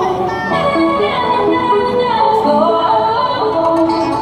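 Pop song with singing played loud through a small portable busking amplifier, with a melody that glides and changes pitch continuously.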